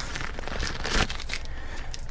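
Plastic packaging bag crinkling as it is worked open and a charge cable is pulled out of it: an irregular run of small crackles, with one sharper crackle about halfway through.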